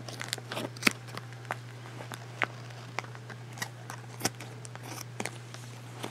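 Scissors snipping into a vacuum-sealed plastic bag: irregular small snips and clicks of the blades and plastic, over a steady low hum.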